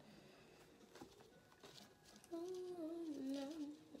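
Faint rustling and clicking of wet plaster bandage and wire being handled. About two seconds in, a woman's voice comes in with a long, sung-out "oh, no".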